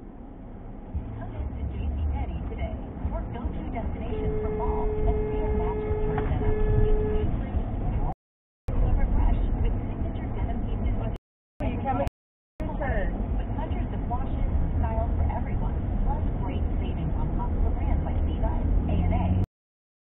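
Car cabin and road noise recorded by a dashcam, a steady low rumble. A car horn sounds about four seconds in, held for about two seconds, then a shorter second blast. The sound cuts out three times briefly between about eight and twelve seconds in.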